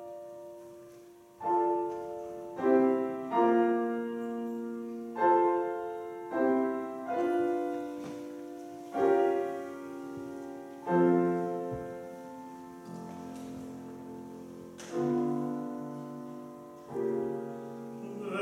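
Solo passage on a Petrof grand piano: a slow series of chords, each struck and left to ring and die away, in a classical art-song accompaniment.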